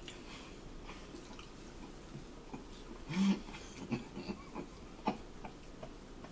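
Eating sounds: a fork clicking and scraping on a china plate while macaroni salad is scooped, with chewing and a short hummed "mm" about three seconds in.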